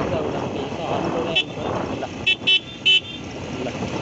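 Motorcycle horn beeping over the running engine and road noise: one short beep, then three quick beeps about a second later.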